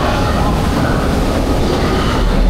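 Ride boat of a water flume ride running along its guide channel, a steady rumble and rattle.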